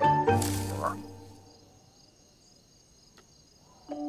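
A cartoon music cue with a whooshing swish about half a second in dies away over the first second and a half. It leaves faint night ambience of high, steady insect chirring with a single soft click, and the music comes back in right at the end.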